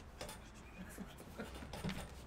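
Faint, irregular rustling and scratching of a sheet of paper being handled on a table.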